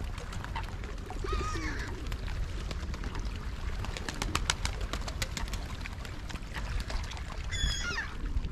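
Birds calling at a lake's edge: one bending call about a second in and another near the end, over a steady low rumble of wind on the microphone. A run of quick clicks comes in the middle.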